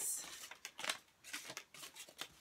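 Faint, irregular rustling and crinkling of paper slips being handled, a handful of soft brushes at uneven intervals, as when entries are drawn by hand.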